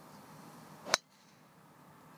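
Golf driver striking the ball: a single sharp crack about a second in.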